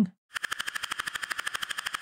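Synthesized breathy noise from Serum's noise oscillator, an 'H-Breath' sample, chopped on and off very rapidly by an LFO into an even stutter of about twenty pulses a second, with no pitch movement, starting about a third of a second in.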